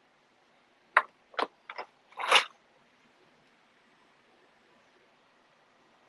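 Three short, sharp clicks within about a second, followed by a brief rustle.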